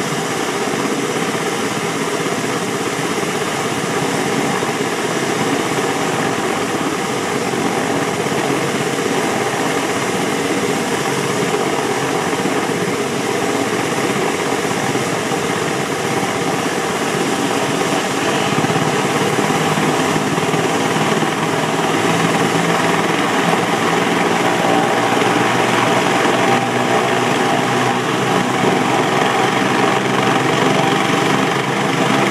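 Medical helicopter running on the helipad, its turbine engines whining and rotor turning steadily ahead of lift-off, the sound growing a little louder in the second half.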